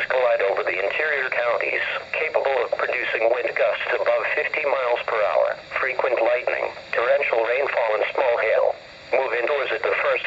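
NOAA Weather Radio broadcast voice reading a hazardous weather outlook about developing thunderstorms, played through a weather alert radio's small speaker. It sounds thin and narrow, with no bass, and pauses briefly near the end.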